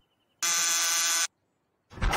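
Door buzzer sounding once: a steady electric buzz lasting just under a second.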